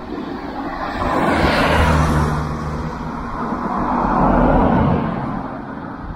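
Road traffic: two vehicles pass by, the first swelling about a second in, the second around four seconds in.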